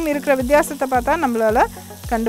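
Diced vegetables sizzling in a hot frying pan as they are stir-fried with a wooden spatula. A louder pitched sound whose pitch glides up and down every fraction of a second runs over the sizzle.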